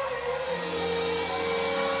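Live band music amplified through a club's sound system, with one long held note starting about half a second in.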